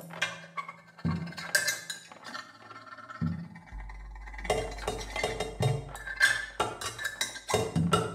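Free-improvised percussion: an amplified, contact-miked cymbal worked by hand together with drums struck with a mallet and electronic sounds, making dense, irregular clicks and knocks with short ringing. A low steady hum comes in about four seconds in.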